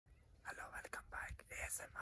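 A man speaking softly in a whispery voice, starting about half a second in.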